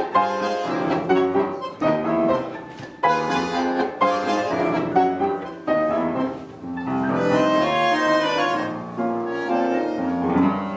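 Live Argentine tango music on bandoneon and upright piano, with accented beats about once a second, then long held chords near the end.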